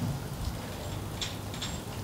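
Steady low hiss of background room noise in a pause between speech, with a couple of faint ticks.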